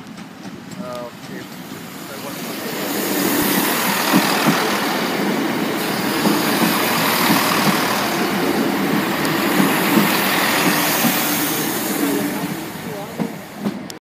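Diesel multiple-unit passenger train passing close by: its running noise builds over the first few seconds, then holds as a steady rumble with repeated wheel clatter over the rail joints, easing a little near the end.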